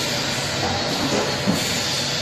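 A vertical form-fill-seal pouch packaging machine with a pump-type liquid sauce filler running: a steady mechanical noise with a faint high whine, and a sharp click about one and a half seconds in.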